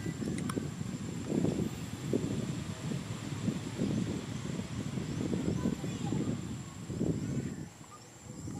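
Indistinct, muffled voices of people talking in the background, coming and going a few times a second, with no words made out, over a faint steady high-pitched whine.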